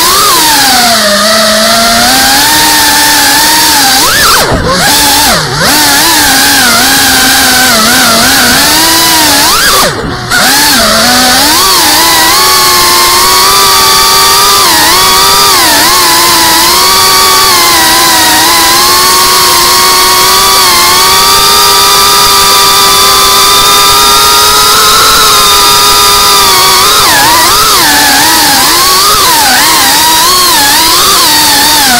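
FPV quadcopter's brushless motors and propellers whining loudly as heard from on board, the pitch rising and falling with the throttle. The sound dips briefly three times, twice about five seconds in and once about ten seconds in, then holds a steadier high whine for the rest.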